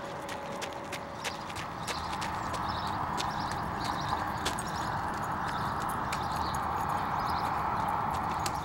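Running footsteps on pavement, a series of sharp slaps a few times a second, over a steady rushing noise.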